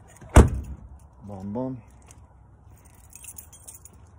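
A single sharp thump about half a second in, then a bunch of keys jangling near the end.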